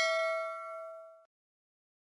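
Notification-bell ding sound effect ringing and fading out, gone about a second and a quarter in.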